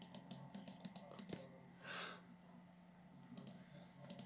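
Faint, rapid clicking at a computer, about a dozen light clicks in the first second and a half, with a brief soft hiss about two seconds in and a few more clicks near the end.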